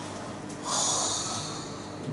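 A person's quick breath in, about a second long, starting about half a second in: a pause for breath in the middle of a spoken sentence.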